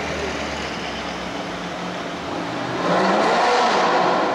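Modified BMW saloon's engine running low in slow traffic, then revving up and getting louder as it accelerates away near the end.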